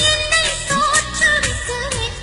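Indian film-style song music: a gliding melody line over a steady percussion beat.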